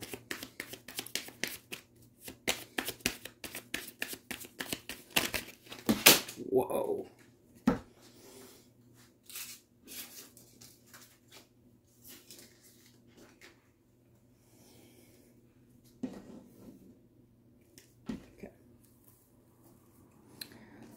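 Tarot deck being shuffled by hand: a fast run of card flicks for about six seconds, then a few scattered, quieter card sounds.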